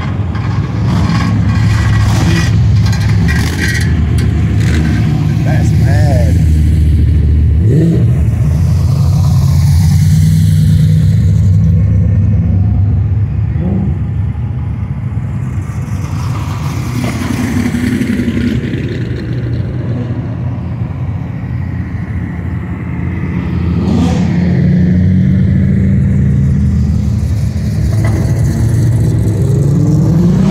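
Engines of modified cars crawling along in a street cruise: a steady, loud low exhaust rumble, with a few short revs rising in pitch.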